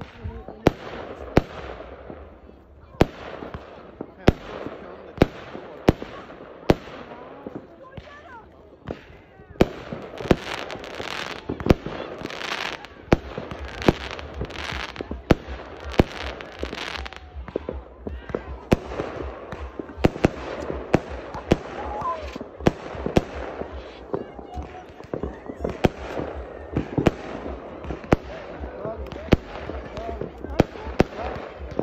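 Aerial fireworks going off: a continuous run of sharp bangs, about one a second at first and coming much thicker from about ten seconds in.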